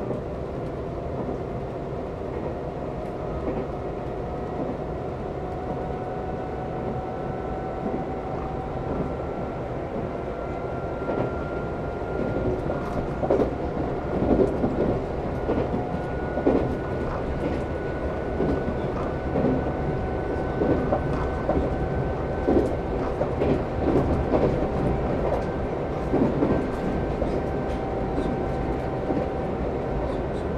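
Nankai 30000 series electric train running at speed, heard from the cab: a traction-motor whine rises slowly in pitch as the train accelerates. From about twelve seconds in, the wheels clatter over rail joints and points in a run of short knocks.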